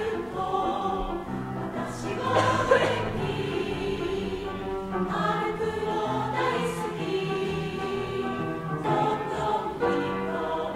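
A mixed choir singing in harmony, with held notes that change every second or so and a few sharp hissing consonants.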